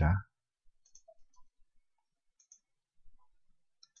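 A few faint computer mouse clicks, short and irregularly spaced, with a couple close together near the end.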